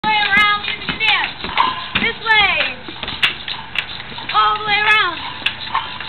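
Young children's high voices calling out in long, drawn-out shouts while they play small hand percussion (hand cymbals, tambourine, rhythm sticks), with sharp taps and clashes scattered throughout.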